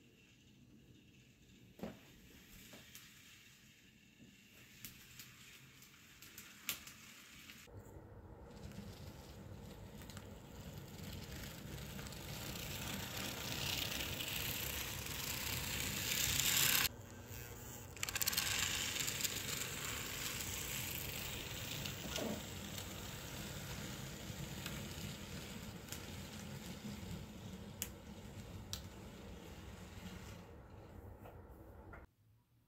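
N scale F7 model locomotive running along the track, its wheels and motor making a rolling rattle that builds up and peaks about halfway, breaks off for about a second, then goes on and slowly fades. A few sharp clicks in the quieter first seconds.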